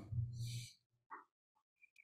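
A man's drawn-out, hesitant "um" trailing off through a microphone, then near silence for over a second with a couple of faint ticks.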